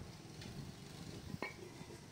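A single faint metallic clink about a second and a half in, with a short ring, as a metal boat propeller is set down among others. A low steady hum runs underneath.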